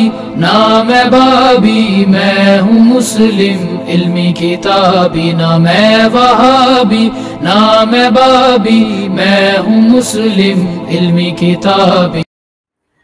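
A male voice chanting a melodic, ornamented line, sung in continuous phrases in the style of a nasheed.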